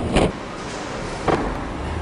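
A car engine rumbling low, with two quick whooshing sweeps about a second apart as the car passes.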